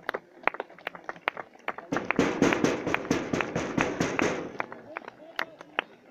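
Spectators at a football match clapping: scattered claps, swelling about two seconds in to a dense burst of applause mixed with calls that lasts two or three seconds, then thinning back to single claps.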